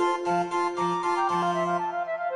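Baroque chamber music for recorder, transverse flute and basso continuo of cello and harpsichord: two upper wind lines move in quick notes over a long held middle note and a bass of short, detached repeated notes.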